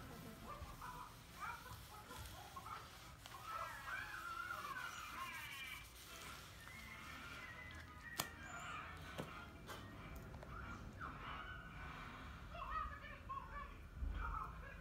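Chickens clucking faintly, many short calls scattered throughout, with a single sharp click about eight seconds in.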